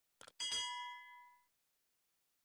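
A short click, then a bright bell ding that rings for about a second and fades away: the notification-bell sound effect of an animated subscribe button.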